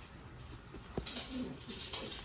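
Hands handling denim jeans at the waist button strap: a light click about a second in, then soft fabric rustling. A faint low cooing sound follows.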